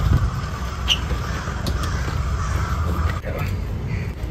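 Steady low rumble of wind and handling noise on a handheld phone microphone carried outdoors at a walk, with a short, faint high chirp about a second in.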